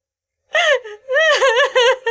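A young woman sobbing and wailing, her voice catching and wavering up and down in pitch, starting about half a second in.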